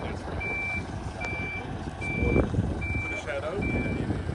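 Flatbed tow truck's warning beeper sounding a steady high-pitched beep about once every 0.8 seconds, over the low rumble of the truck's engine running, while its bed is tilted down for loading a car.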